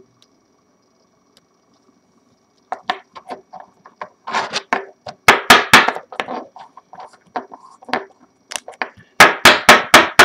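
Rigid clear plastic card holders being handled and set down as a trading card is cased: a string of sharp clicks and clacks of hard plastic on plastic and on the table. The clicks start a few seconds in and come thickest around the middle and again near the end.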